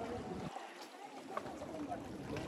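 Indistinct, distant voices of people chatting, over a soft wash of water.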